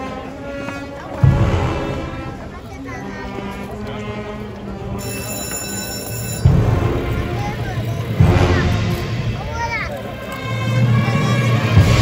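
A procession band playing a slow Salvadoran funeral march on held brass and wind chords. Deep drum strikes land four times, spread unevenly through the passage.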